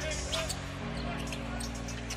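A basketball being dribbled on the hardwood court, with arena music holding low sustained notes and crowd noise underneath.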